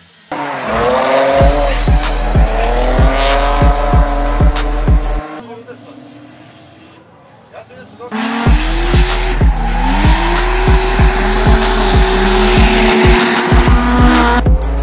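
A drift car's engine revving and its tyres squealing in two long spells, with a quieter gap in the middle. A music track with a steady beat and deep bass plays over it throughout.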